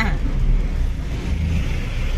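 Steady low rumble of a moving vehicle heard from inside its cabin: engine and road noise while driving.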